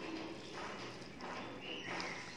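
Close-up chewing of a mouthful of rice and curry, with wet mouth smacks about twice a second.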